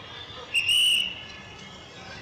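A single high-pitched whistle blast, about half a second long, starting about half a second in, over a low steady street hum.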